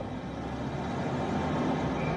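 Steady outdoor background noise, an even low rumble that grows slightly louder, with no single voice or event standing out.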